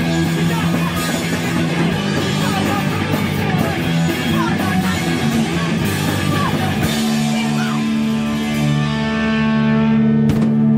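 Live rock band played loud: distorted electric guitar, bass and drum kit with cymbal crashes. About seven seconds in the drumming drops away and a held chord rings on, the end of a song.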